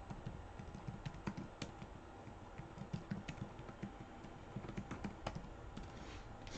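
Typing on a computer keyboard: faint, irregular key clicks in quick runs.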